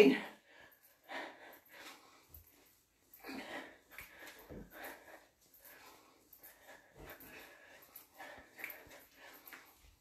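A woman's breathing while throwing punches: faint, short puffs of breath at an irregular pace.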